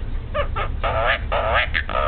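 A hill myna giving a quick run of about five short, harsh, raspy squawks.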